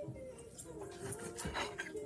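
A man humming a wavering tune with his mouth closed, with a few light clicks of a metal fork against a plate about one and a half seconds in.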